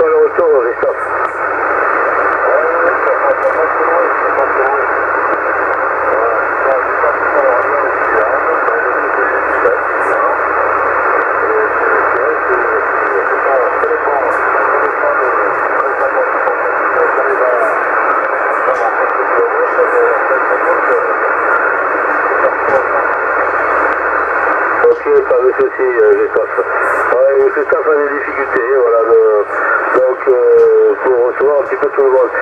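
A distant CB station's voice received in lower sideband on a Yaesu FT-450 transceiver's speaker: a narrow, steady hiss of band noise with a weak voice buried in it, the voice coming through much more clearly near the end.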